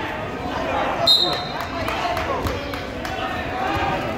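A short, high referee's whistle blast about a second in, over the constant chatter and shouts of a crowd in a gymnasium, with a few scattered thuds.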